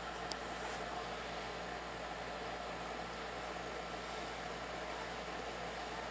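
Steady background hiss with a faint low hum, as from a fan or room ventilation picked up by a phone microphone. One sharp click comes about a third of a second in.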